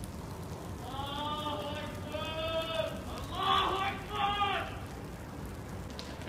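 A person shouting four long, drawn-out calls, the loudest about three and a half seconds in, over a steady hiss of background noise.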